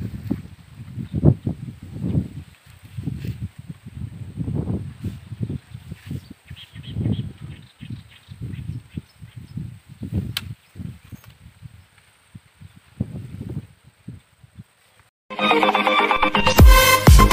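Wind buffeting the phone's microphone in irregular low gusts, with a single sharp click about ten seconds in. Electronic dance music starts just before the end.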